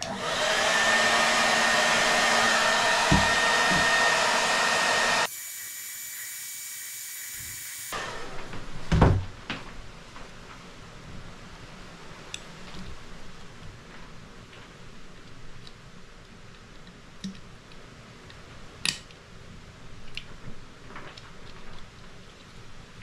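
A hand-held blow dryer running steadily for about five seconds, drying freshly sprayed paint, then a thinner hiss for a couple of seconds that stops abruptly. A single thump follows about nine seconds in, then a few light clicks of handling.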